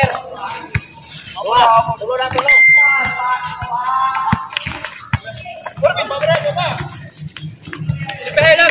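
Players' voices calling out and talking during an outdoor pickup basketball game, with the dull thuds of a basketball being dribbled on a concrete court.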